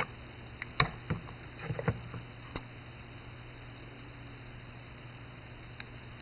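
Several light clicks and knocks in the first few seconds as the metal halves of a mechanical fuel pump are handled and fitted back together, the loudest about a second in. Then only a steady low hum.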